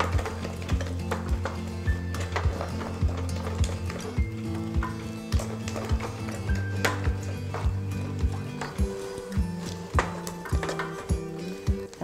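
Background music: sustained low notes over a steady, clicking beat.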